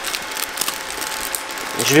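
Clear plastic packaging crinkling and crackling in a run of quick, irregular small clicks as it is handled and pulled open by hand.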